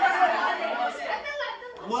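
Schoolboys chattering and talking over one another in a classroom.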